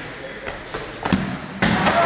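A rubber sports ball kicked hard on a concrete floor: a few knocks of the run-up and a sharp thud of the kick, then a sudden loud burst of noise near the end.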